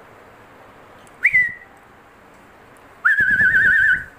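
A person whistling close to the microphone: a short whistle that jumps up and settles on a steady note about a second in, then a longer warbling whistle with a fast, even wobble in pitch near the end.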